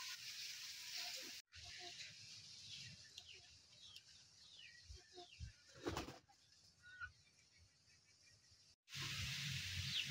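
Faint outdoor ambience with small birds chirping in short, falling calls, and one brief noisy flurry about six seconds in.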